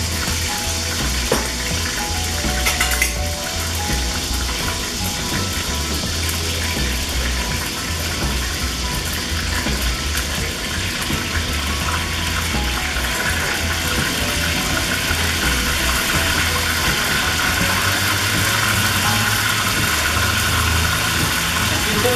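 Chile-and-pulque adobo sauce sizzling steadily as it is poured and pressed through a wire-mesh strainer into hot oil in a clay cazuela. The sizzle grows a little louder in the second half.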